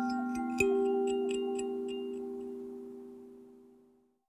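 A handpan's closing notes ringing out. A low note is held, and a higher note is struck about half a second in; both fade away to silence near the end, with light high tinkling over the first two seconds.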